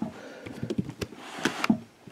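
A plastic carrier bag crinkling and rustling in a few short bursts, with light taps, as it is handled and opened.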